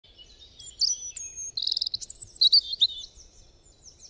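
Birds singing: a mix of high-pitched chirps, short whistled notes and a quick trill, loudest in the middle and thinning out toward the end.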